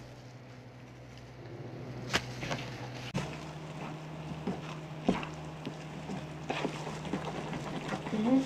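A wooden spoon stirring thick bread-pudding batter in a mixing bowl, with irregular soft knocks and scrapes of the spoon against the bowl, over a steady low hum.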